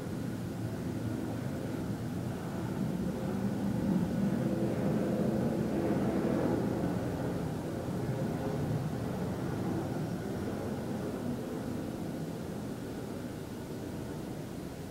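Low rumble of a passing engine, swelling to a peak around the middle and then slowly fading.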